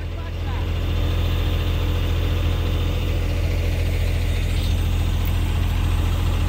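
Truck's diesel engine running steadily to drive the hydraulic pump of an Argos 43.0 truck-mounted knuckle-boom crane, a low steady hum that picks up slightly in the first second.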